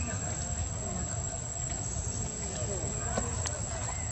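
Outdoor background noise: a steady low rumble with faint, distant voices, and a single short click a little after three seconds in.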